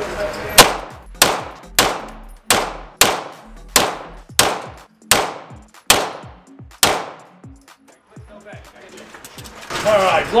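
Beretta 9mm pistol fired ten times in steady succession, about one shot every two-thirds of a second, each shot ringing and echoing off the steel booths of an indoor range.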